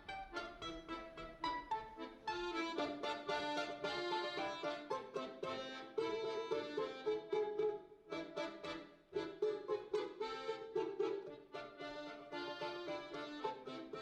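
A balalaika and a Victoria piano accordion playing a piece together as a duet, with quick plucked balalaika notes over held accordion tones. The playing is sparser for the first couple of seconds, then fills out.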